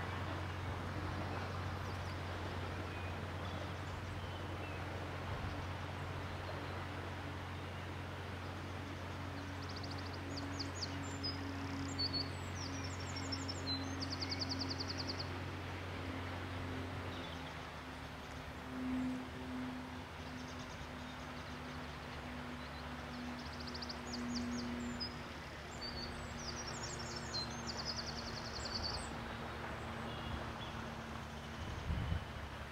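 Outdoor canal-side ambience with a steady low engine hum, the narrowboat's diesel engine running, whose pitch and level shift about halfway through. A small songbird sings rapid, high trilled phrases twice, once around the middle and again near the end.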